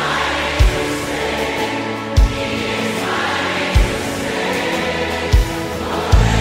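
Live worship band music with many voices singing together, a deep drum beat landing about every second and a half.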